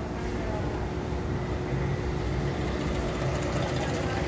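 Electric sewing machine motor running steadily as a line of stitching is sewn, a constant hum with a thin steady tone.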